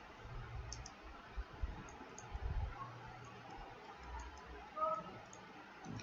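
Faint scattered clicks and light low taps of a stylus working a digital pen tablet, with a brief faint hum of a man's voice near the end.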